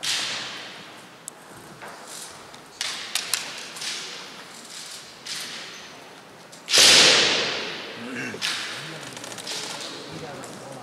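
Kendo kiai shouts ringing in a large hall: a loud one at the start and the loudest about seven seconds in, each fading over a second or so, with a few sharp clacks of bamboo shinai in between as the two fencers work at close quarters.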